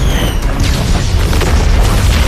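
Sound effects of an animated battle: a continuous deep rumble of explosion booms as energy blasts strike and rocks shatter, with music underneath.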